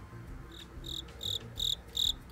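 Cricket chirping, used as a comedy sound effect for an awkward silence: short, even chirps repeated just under three times a second, starting about half a second in.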